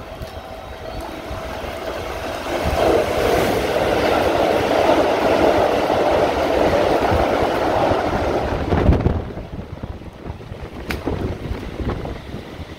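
Keikyu Line electric train passing close at speed: a loud rushing rumble of wheels on rails that builds from about two seconds in and drops off sharply near nine seconds as the last car goes by. Heavy rain hisses underneath, with wind buffeting the microphone.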